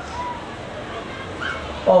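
A pause in a man's amplified talk, with two faint, brief high-pitched sounds in the background. His voice returns just before the end.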